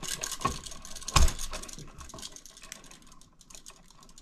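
Gloved hands working electrical wires and a plastic wiring device at an outlet box: a run of small clicks and rustles, with one louder knock about a second in.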